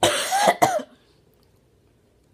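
A boy coughing twice in quick succession, harsh and voiced, in the first second, from the burn of the hot sauce he has just drunk.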